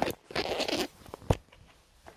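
A brief rustle of the phone being handled right against the microphone, then a single sharp click about a second and a half in.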